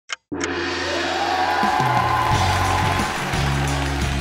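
The last ticks of a game-show countdown timer, then a music cue that starts about half a second in and plays with steady bass notes and a long arching synth tone.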